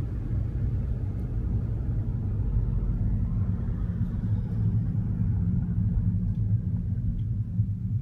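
Steady low rumble of a moving car heard from inside its cabin: engine and road noise while driving.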